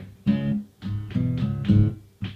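Guitar playing a short run of chords between sung lines of a song, each chord struck separately and dying away before the next.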